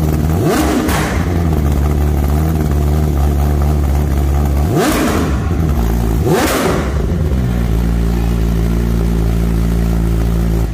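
BMW M1000RR inline-four through a full Akrapovic Evolution race exhaust, idling on the stand and blipped on the throttle in short revs: twice within the first second, and twice more around the middle before it settles back to idle.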